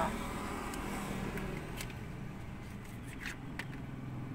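Faint scattered clicks and scrapes of fingers working at the cap of a small essential-oil bottle whose seal is still unbroken and won't open, over a steady low hum inside a car.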